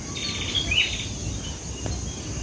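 Birds chirping in a short burst during the first second, over a steady high-pitched insect buzz and a low rumble.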